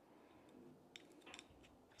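Near silence with a few faint small clicks, one about halfway through and two close together shortly after: metal handling clicks from a hex key loosening the two clamp screws on a bicycle bell's bracket.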